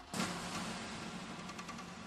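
Logo-animation sound effect: a sudden swell about a fifth of a second in, settling into a low steady hum under a shimmering hiss that slowly fades.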